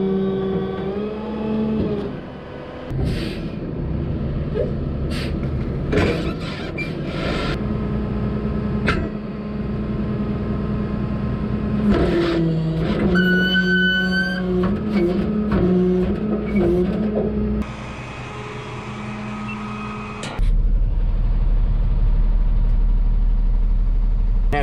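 Flatbed tow truck's engine running steadily while cars are winched and loaded, with sharp clanks of chain and metal and a brief high whine partway through. From about twenty seconds in, a louder, steady low engine rumble is heard from inside the truck's cab.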